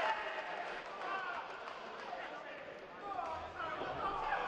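Indistinct speech over steady background noise.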